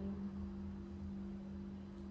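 A steady low hum with a faint hiss under it: room tone, with nothing else sounding.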